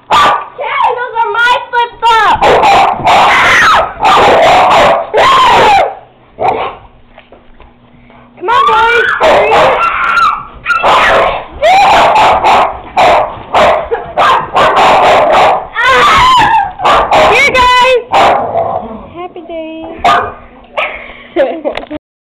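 Dogs barking and yipping in a scuffle, mixed with girls screaming and laughing. It comes in loud bursts, with a short lull about a third of the way in.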